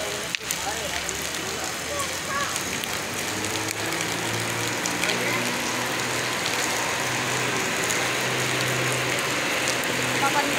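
Heavy rain falling on flooded pavement and puddles: a steady, even hiss of drops splashing on water. A low steady hum sits underneath from about three seconds in.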